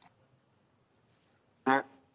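Near silence with a faint low hum, then a brief spoken syllable near the end.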